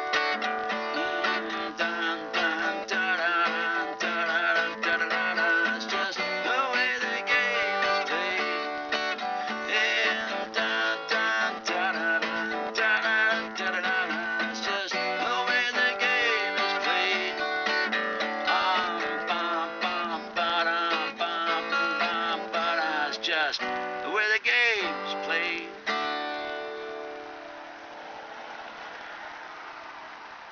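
Instrumental close of a folk-rock song: strummed acoustic guitar with a melody that bends in pitch. About 26 seconds in, the playing stops on a last chord that is left ringing and slowly fades.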